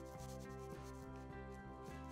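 Soft background music, with a paintbrush rubbing and stroking across textured sketchbook paper as watercolour is laid on.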